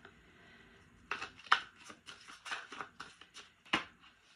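A thick double deck of oracle cards being shuffled by hand. After about a second of quiet comes an irregular run of sharp card slaps and flicks, the last one just before the end.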